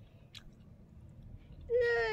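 A short quiet stretch with a faint click, then near the end a tearful toddler's high, whiny whimper, falling in pitch.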